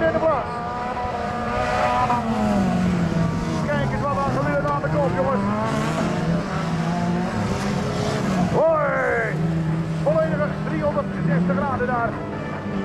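Rodeo-class autocross cars racing on a dirt track, their engines revving up and falling away as they accelerate, lift and shift, with one sharp rising rev about nine seconds in.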